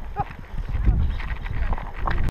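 Polo ponies galloping on grass field recording, hoofbeats and a low rumble growing louder about half a second in, with a short shout from a rider right at the start.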